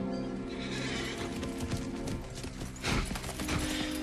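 Horse hooves clopping on stony ground and a horse neighing, with a loud burst of sound just before three seconds in, over film-score music with long held notes.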